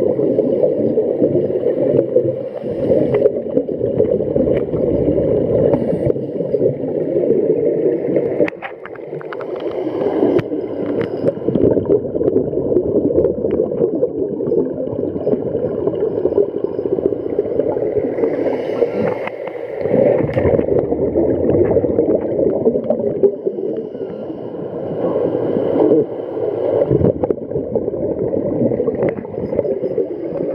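Scuba divers' regulator exhaust bubbles heard underwater: a continuous muffled bubbling rumble, dipping briefly about eight and twenty seconds in.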